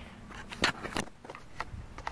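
Handling noise from a hand-held camera being turned around and moved: rubbing against fabric, with a few sharp knocks, the two loudest close together in the first second.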